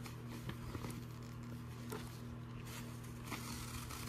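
Steady low hum of a mini fridge, with faint rustling and light ticks of fishnet tights being handled.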